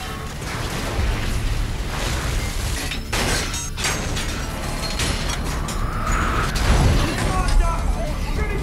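Offshore oil-well blowout in film sound design: a dense rushing roar of gas and mud spraying over a drilling rig, with a deep rumble, a burst of sharp metallic knocks about three seconds in, and a short rising whine before it swells loudest near the end, mixed with a music score.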